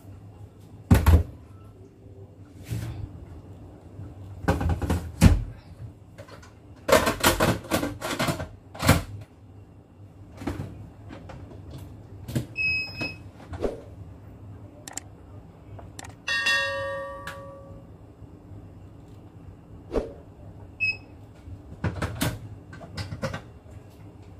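A metal cooking pot is knocked and clattered as it is set into an electric multicooker and the lid is fitted. This is followed by the cooker's control panel beeping as it is set: short beeps, and one longer tone about two-thirds of the way in.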